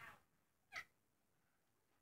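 Two faint, short, high-pitched bleats from a newborn pygmy goat kid, each falling in pitch, about three quarters of a second apart.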